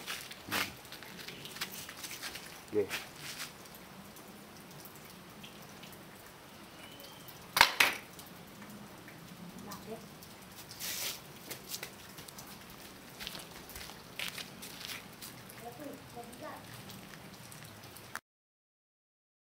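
Scattered knocks and clatter from a small wooden catapult being handled on concrete, the loudest a single sharp knock about eight seconds in. Under it a faint steady patter of dripping water.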